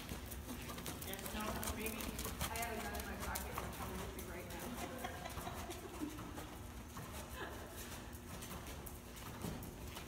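Hoofbeats of a ridden horse moving over the sand footing of an indoor arena, with some faint indistinct talk.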